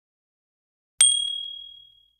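A single bright ding sound effect, like a notification bell, starting about a second in and ringing out as it fades over a second.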